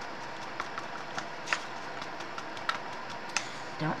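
Scattered light clicks and small taps from gloved hands handling a plastic cup of mixed resin, over a steady low room hum.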